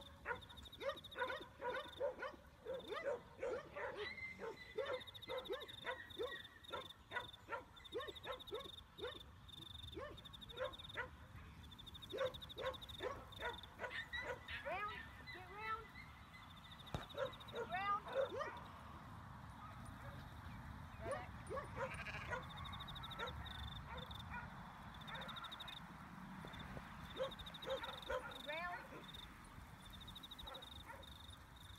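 A flock of sheep bleating, many short calls overlapping, with a high pulsing trill coming and going behind them.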